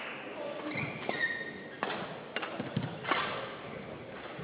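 Badminton rally: rackets striking the shuttlecock in a run of sharp hits about half a second apart, with a short squeak of court shoes on the floor mat about a second in.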